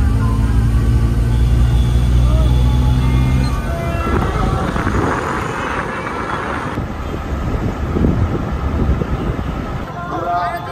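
Car engine and road noise heard from inside the cabin while driving, a steady low drone that drops away about three and a half seconds in, followed by rougher traffic noise.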